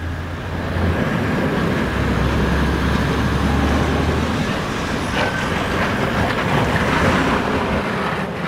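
Toyota LandCruiser 79 Series ute's engine working hard in low range as it climbs a steep rock ramp with no lockers engaged. Its steady low hum drops away about four seconds in, as the run stalls for lack of traction.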